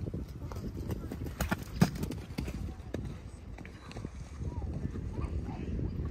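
Horse's hoofbeats on a sand arena, a run of muffled thuds with a few sharper knocks about a second and a half to two seconds in.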